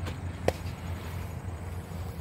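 A single sharp click about half a second in, over a low steady outdoor hum.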